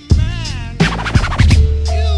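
1990s hip-hop beat with turntable scratching in a break between rapped verses, over kick drums and a deep bass note held through the second half.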